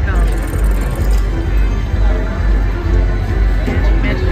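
Huff n' More Puff slot machine playing its free-games bonus music and reel-spin sound effects over a steady, regular bass beat.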